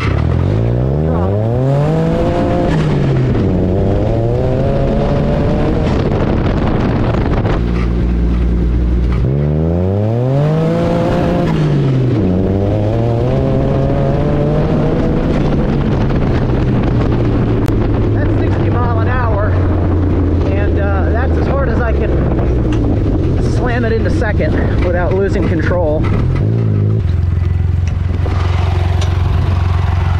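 Turbocharged buggy engine making two hard full-throttle pulls, its pitch climbing steeply for about two seconds each time and then dropping back. The turbo's recirculation valve routes the blow-off back into the intake, so there is no loud blow-off release. The engine then runs steadily and settles to a lower, even note near the end.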